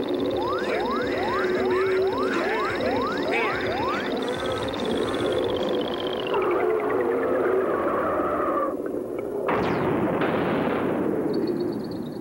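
Cartoon sound effects for a diving plane: a run of quick rising whooshes, then a long falling whistle as it dives, ending in a sudden noisy crash of the landing about nine and a half seconds in, over a background of steady held tones.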